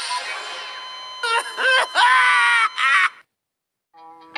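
A voice letting out loud, drawn-out groaning cries with bending pitch, which cut off suddenly about three seconds in.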